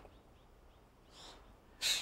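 A pause between spoken sentences: quiet, with a faint breath about a second in, then a man's sharp breath in near the end.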